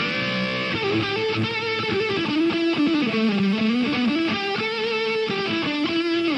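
Stratocaster-style electric guitar playing a lead line. Long held notes are bent and shaken with vibrato, and the pitch dips and climbs back about halfway through.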